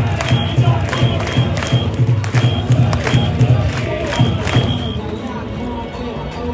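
Ballpark PA playing loud upbeat music with a heavy, regular beat over crowd noise. The beat stops about five seconds in and the level drops a little as softer music continues.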